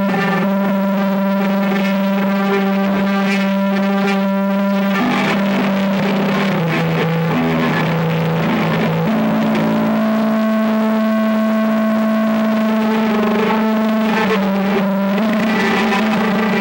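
Electric guitars run through distortion and effects pedals, holding a loud, sustained drone. The pitch shifts about five seconds in and settles on a new steady note about nine seconds in.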